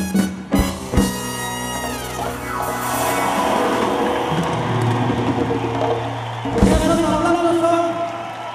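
Live salsa band with brass ending a song: sharp band hits in the first second, then a long held final chord, with the brass sliding down in pitch early on and another accent near the end before it fades.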